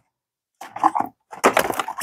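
Small plastic cosmetic jars being handled, clicking and knocking against each other in a quick run of knocks that starts about half a second in.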